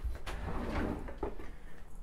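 A kitchen drawer being pulled open, a low rumble with a few soft knocks.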